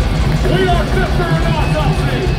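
Deathcore band playing live at full volume, with distorted guitars and drums keeping a steady low pulse and a voice shouting over the top.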